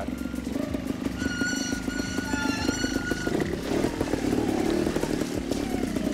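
Trials motorcycle engine running and being blipped while the bike picks its way through a rocky stream section, the revs rising about three and a half seconds in. A high, wavering whine sits over it for a couple of seconds near the start.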